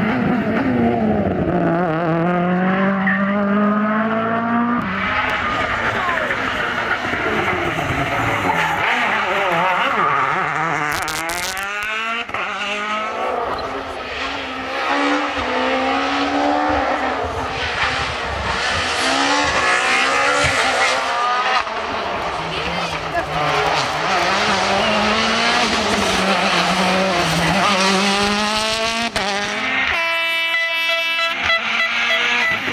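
Turbocharged World Rally cars, among them a Ford Fiesta RS WRC and a Citroën DS3 WRC, passing one after another at speed on a tarmac stage. Their engines rev up and fall back through gear changes, with tyre noise, and the sound changes abruptly every several seconds as one car gives way to the next.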